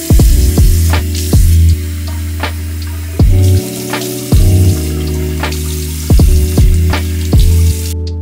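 Water running steadily from a bathroom sink faucet into the basin, a hiss under background music that has a steady beat and regular drum hits.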